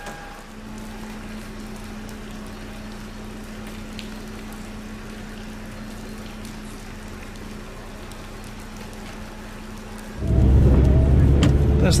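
A steady low hum with a light patter of wet sleet or rain. About ten seconds in, a car moves off, and loud engine and wet-road rumble fills the cabin.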